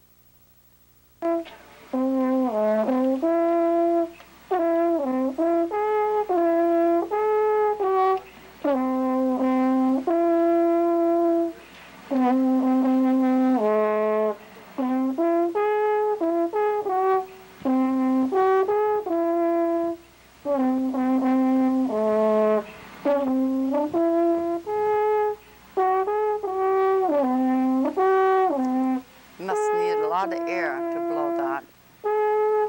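Alphorn playing a slow melody of held notes in phrases, with short breaks for breath between them; the playing starts about a second in.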